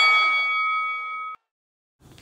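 A boxing ring bell ringing out and fading, then cut off abruptly a little over a second in, followed by silence.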